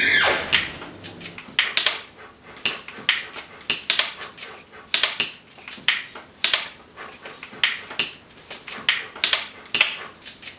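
Hand bicycle pumps being worked, several at once: irregular, overlapping pump strokes with an airy hiss, about two a second.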